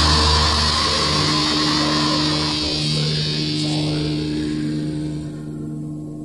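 Black metal: the band stops on a held, distorted chord that rings on and slowly fades, its high-end hiss thinning out near the end.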